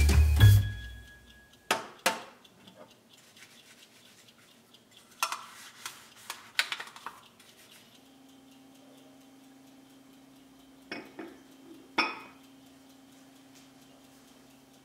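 Dishes being washed with a bristle dish brush at a stainless steel sink, with sharp clinks and clatter of dishware, as music fades out at the start. Later a faint steady hum sets in, and near the end a glass cup clinks twice as it is set down on a glass saucer.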